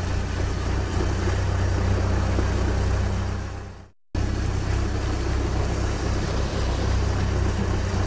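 Steady low engine-running sound effect for a cartoon excavator, fading out just before four seconds in. After a brief silence, a similar steady engine sound starts again for a road roller.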